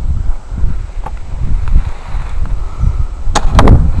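Wind buffeting a camcorder microphone as a loud, uneven low rumble, with a few sharp knocks of handling near the end.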